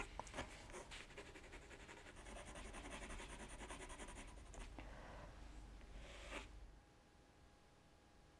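Faint scratching of a water-soluble coloured pencil stroked rapidly back and forth over watercolour paper, shading in streaks. It stops about seven seconds in.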